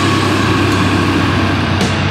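Death metal: heavily distorted electric guitars and drums playing a dense riff over a steady low note.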